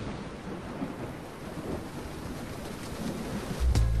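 A rolling, thunder-like rumble with a rain-like hiss and no music or voice, a sound effect in the break between the sketch's music and the credits music.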